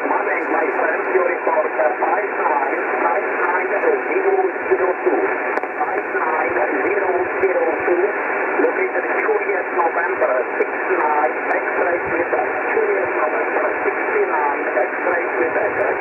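Single-sideband receiver audio from an Icom transceiver tuned to the 2-metre band in USB: a steady, narrow, telephone-like hiss with weak, garbled voices wavering through it, too faint to make out.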